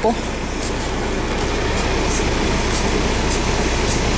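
Steady low drone of a semi-truck's idling diesel engine heard inside the cab, with a few faint rustles as the camcorder is handled.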